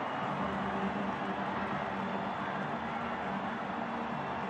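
Steady stadium ambience at a football match: an even background wash from the ground as players celebrate on the pitch, with no sharp sounds standing out.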